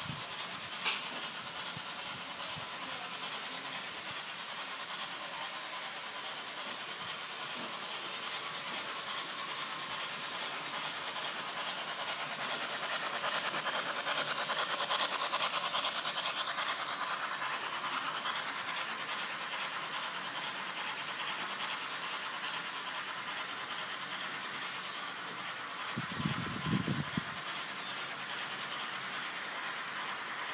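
Märklin H0 model trains running on plastic-roadbed track: the steady whir of small electric motors and the rattle of wheels, growing louder for a few seconds in the middle as a train passes close. A short low sound breaks in near the end.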